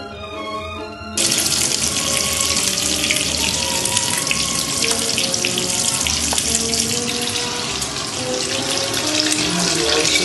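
Bacon frying in a pan: a steady sizzle with fine crackles, cutting in suddenly about a second in, over light background music.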